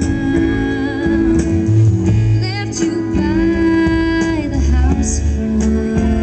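A woman singing lead over a live band of guitars, keyboard and drums, holding long notes with vibrato.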